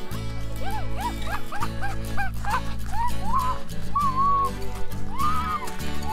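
Background music with steady low notes, over which a dog, a beagle, gives a quick run of short yelps that rise and fall in pitch, then a few longer whines.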